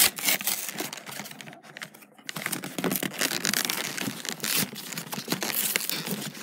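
Hands tearing open and crinkling the packaging of a trading card box: a rapid, irregular run of crackles and rips, with a brief lull about one and a half seconds in.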